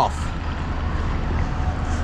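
Steady low outdoor rumble with an even background hiss, with no distinct clicks, knocks or engine tones.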